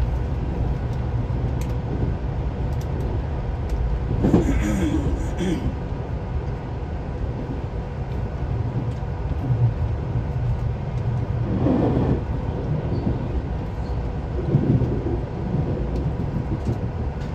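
Cabin noise of a JR 383 series electric train: a steady low rumble as it runs slowly into a station, with a short hiss about four seconds in.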